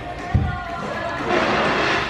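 A single dull low thump about a third of a second in, over restaurant background noise of voices, with a louder rush of noise near the end.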